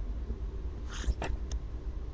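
Steady low hum with a few short, sharp computer mouse clicks about a second in, as cells are selected in a spreadsheet.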